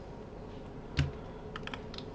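Computer keyboard keystrokes: one heavier key press about a second in, then a quick run of clicks.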